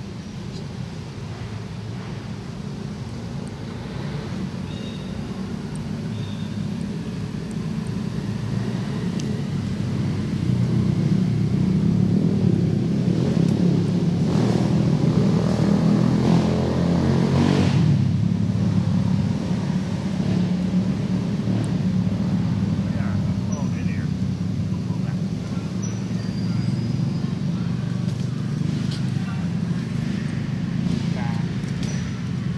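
A motor vehicle's engine running nearby, a low rumble that grows louder over the first ten seconds or so and then keeps going, with a louder rush of noise around the middle.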